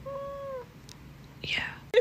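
A cat gives one short meow: a single steady, clear note lasting about half a second.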